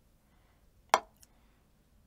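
A wooden drumstick strikes a practice pad once, about a second in: a single sharp click, followed a moment later by a much fainter tick.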